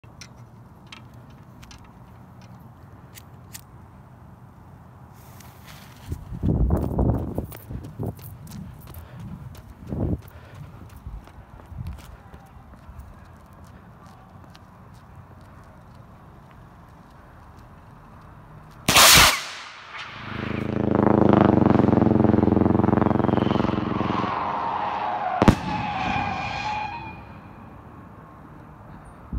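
A 5-inch brown-wrap rocket firework: after some scattered knocks and thumps, a very loud sudden burst as it goes off, then several seconds of dense, buzzing crackle from its strobe that slowly fades, with a sharp pop near the end.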